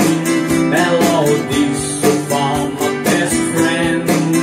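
Nylon-string classical guitar strummed in a steady rhythm, with a harmonica in a neck rack playing a melody over the chords.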